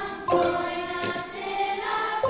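Children's choir singing held notes, with a new note or chord starting roughly every three-quarters of a second, accompanied by classroom xylophones played with mallets.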